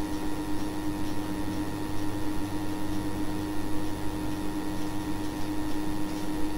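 Steady background hum and hiss with a constant low tone, unchanging throughout.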